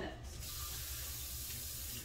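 Kitchen tap running steadily, drawing hot water. The rush of water starts a moment in and continues to the end.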